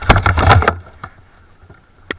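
Rumbling buffeting of wind and handling on a small camera's microphone for under a second, then faint.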